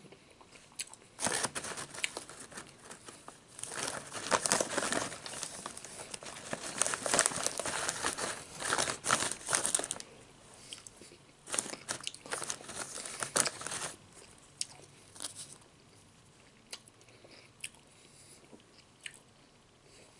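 Close-up crunching and chewing of Nacho Cheese Doritos tortilla chips, mixed with crinkling of the plastic chip bag as a hand rummages in it. Dense crackly stretches fill the first half, with a few more bursts after that, then only scattered small crackles toward the end.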